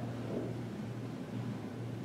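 A low, steady hum with a faint hiss: the room and sound-system background in a pause between a man's spoken phrases.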